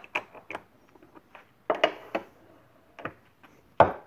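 A metal mold clicking and knocking as it is handled and set into a benchtop injection molding machine, then one loud clunk near the end as the quick-release toggle clamp is thrown to lock the mold in place.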